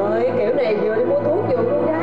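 A woman moaning and whimpering in distress, her voice sliding up and down in long wordless cries, over steady low background music.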